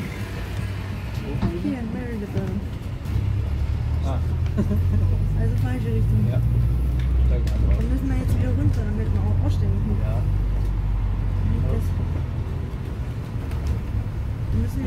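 Interior noise of a London double-decker bus on the move: a low engine and drivetrain rumble that grows louder about three seconds in, as if pulling harder, and eases off near the end. Passengers' voices murmur over it.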